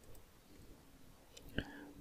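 Quiet room tone with a few faint mouse clicks, and a short breath near the end just before speech resumes.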